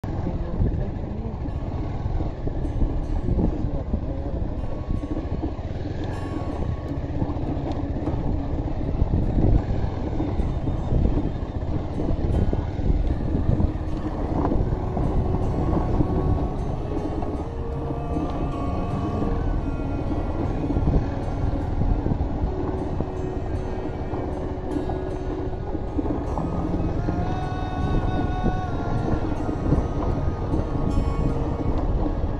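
Ride noise from a Bajaj Pulsar 180 motorcycle on a rough dirt road: wind rushing over the microphone over the running engine. Background music with held melody notes comes in about halfway through.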